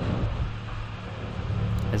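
A steady low hum under an even background noise, with no distinct tool strikes or clicks: the workshop's background hum.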